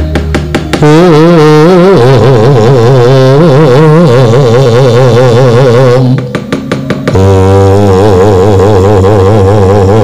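Javanese gamelan accompaniment to a shadow-puppet play. A melodic line wavers with wide, even vibrato over a low sustained drone. Runs of sharp knocks come at the start and again about six seconds in.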